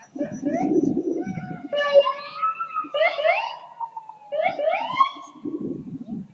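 Emergency-vehicle siren sounded in short goes, starting about two seconds in: a rising wail that slowly falls away over a couple of seconds, then quick upward whoops.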